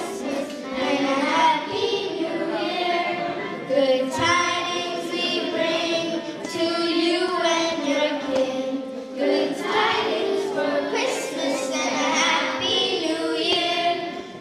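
Children's choir of girls' voices singing a Christmas song together, the sung phrases running on through the whole stretch.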